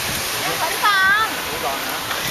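Steady rushing and splashing of a small rock cascade pouring into a pond.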